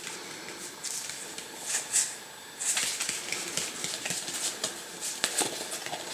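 A deck of playing cards being spread and pushed through by hand: soft sliding of card stock with light clicks and snaps as the cards catch. There is a louder snap about two seconds in and a run of quick clicks near the end.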